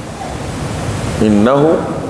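A steady hiss during a pause, with a man's speaking voice resuming a little over a second in.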